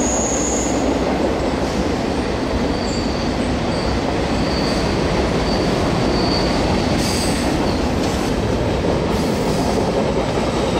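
Boxcars of a freight train rolling past: a steady rumble of steel wheels on rail, with faint high wheel squeals coming and going.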